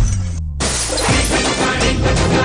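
Action film-trailer music with hit effects: a hit at the start, a brief drop-out under a falling low tone, then a crash as the full music comes back in about half a second in.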